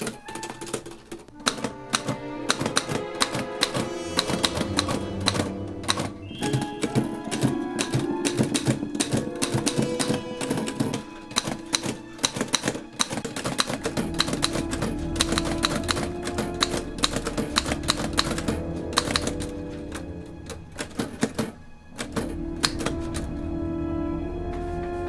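Underwood manual typewriter typing quickly, its keys clacking several times a second, over background music with sustained tones. The typing breaks off briefly near the end while the music carries on.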